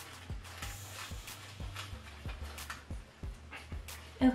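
Folded paper slips rustling and clicking irregularly as a hand rummages through them inside a cloth baseball cap.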